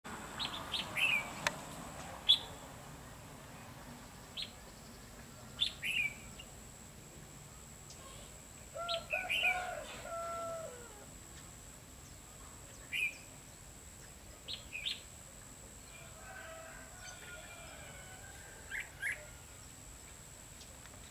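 Red-whiskered bulbuls calling in short, sharp chirps, scattered one to three at a time through the stretch, with a few lower, drawn-out notes about halfway and again near the end. A thin, steady high whine runs underneath.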